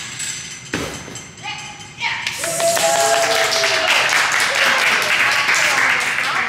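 A gymnast's dismount landing on the mat thuds once, about three-quarters of a second in. From about two seconds in, onlookers cheer and clap loudly.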